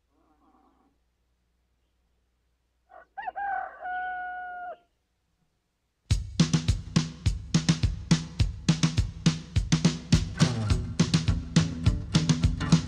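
A rooster crows once, about three seconds in, after near silence. About halfway through, band music with a steady, driving drum beat starts loudly.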